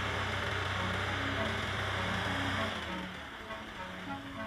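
The Ford loader tractor's engine running steadily, heard from inside its cab as a low hum and broad noise that eases off about two-thirds of the way through, under background music.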